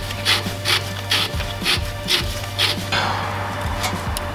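Threaded body of an HSD adjustable coilover being turned by hand to lower the ride height, the metal threads scraping in short repeated strokes, about three a second.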